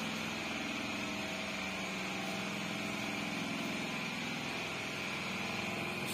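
Motorcycle engine idling steadily, with a steady high-pitched whine alongside it.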